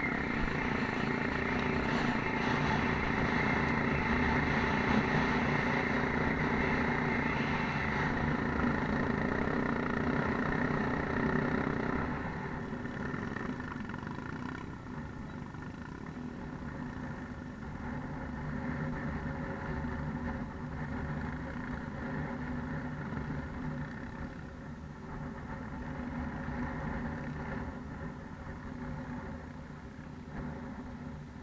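Off-road motorcycle engine running steadily while riding over a rough dirt track. About twelve seconds in the sound drops to a lower, quieter running that carries on.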